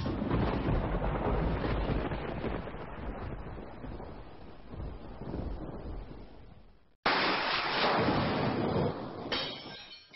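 Thunder sound effect: a loud crack and rumble that fades over several seconds, then cuts off. A second loud burst of the same kind starts suddenly about seven seconds in and fades, with music tones entering near the end.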